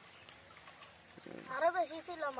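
Quiet background, then a loud, high-pitched voice starting about a second and a half in, its pitch rising and falling over short syllable-like pieces.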